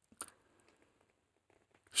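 Near silence: room tone, with one faint click a fraction of a second in, and a man's voice starting again right at the end.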